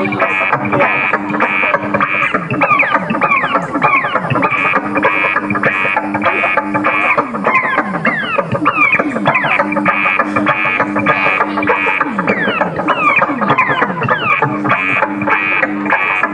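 Live electronic synthesizer music: a dense swarm of quick downward pitch sweeps over a pulsing high tone, with a low two-note drone that drops in and out every few seconds.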